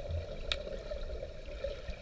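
Muffled underwater sound of pool water stirred by swimmers, heard through a camera in a waterproof housing: a steady low rumble with churning water, and one sharp click about half a second in.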